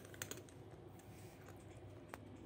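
Kitten eating dry food from a small cup: faint crunching and sharp little clicks of kibble against the cup, with a cluster of clicks in the first half-second and a few fainter ones later.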